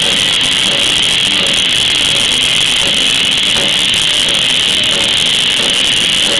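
Live rock band playing an instrumental passage on electric guitars, bass guitar and drum kit. The sound is loud, dense and steady, with a harsh upper-mid edge.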